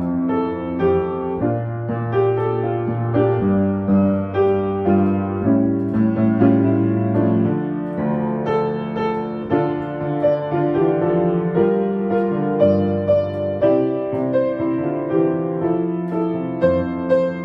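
Grand piano playing a hymn in full chords, each chord held and changing about once or twice a second at a steady pace.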